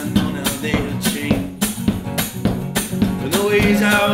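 Acoustic band playing an instrumental passage: strummed acoustic guitar chords over hand percussion keeping a steady beat of a few strikes a second.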